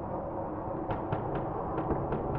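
Dark ambient soundscape: a steady low rumbling drone. About a second in, a faint run of quick, even ticks begins, about four or five a second.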